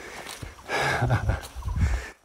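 A man's short, breathy chuckle: a rush of exhaled breath through the nose, then a few brief low voiced laughs.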